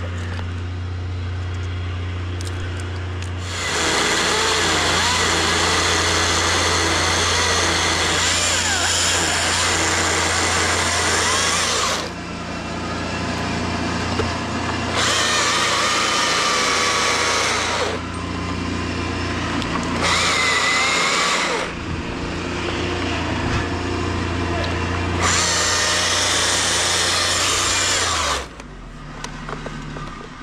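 Husqvarna T542i battery-powered top-handle chainsaw cutting into a poplar trunk. It runs up to full speed in four cuts of a few seconds each, easing off between them, and drops away near the end, leaving a few knocks.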